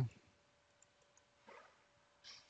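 Faint computer mouse clicks, three light ones in quick succession about a second in, as a folder is opened and a file's right-click menu brought up.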